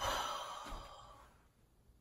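A woman's heavy sigh: one breathy exhale that starts sharply and fades out over about a second.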